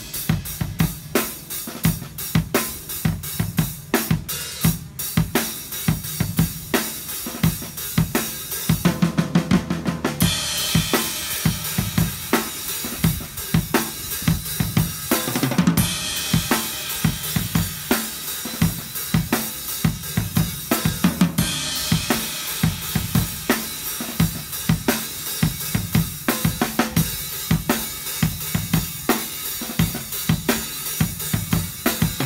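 Acoustic drum kit played in a steady groove of kick, snare and hi-hat, with a quick fill about nine seconds in and crash cymbals hit about ten, sixteen and twenty-one seconds in.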